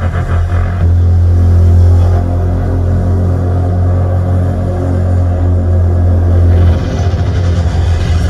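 Live electronic dance music intro played loud over an arena PA: a heavy held bass note under layered synths, giving way near the end to a rapid pulsing pattern.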